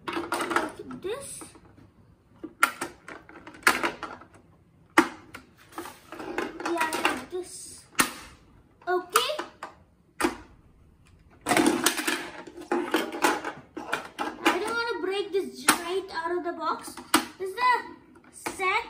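A boy talking indistinctly, broken by several sharp clicks and knocks of plastic as the laser printer's paper input tray and its guides are handled.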